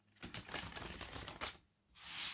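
A deck of cards being shuffled by hand: a quick run of card edges clicking against one another for about a second and a half.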